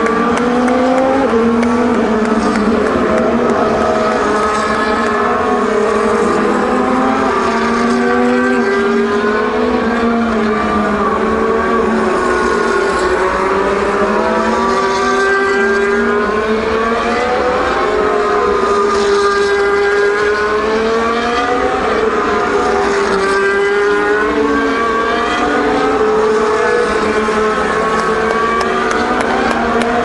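Formula 1 cars with 1.6-litre turbocharged V6 hybrid engines running past on a wet track on the formation lap, one after another, their engine notes rising and falling continuously as they go by.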